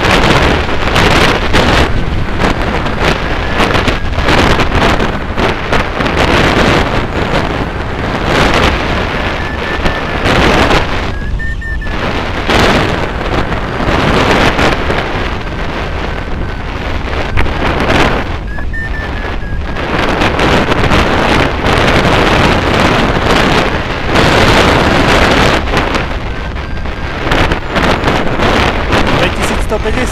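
Rushing airflow buffeting the microphone of a camera mounted on a hang glider in flight, loud and continuous, swelling and easing with the gusts and airspeed.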